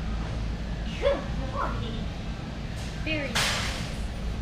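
A dog barking: one sharp bark about a second in, and a louder, harsher bark near the end, over a steady low background hum.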